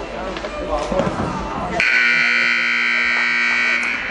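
Arena scoreboard buzzer sounding one steady, loud blast of about two seconds, starting just before the halfway point, as the game clock runs out to signal the end of the game.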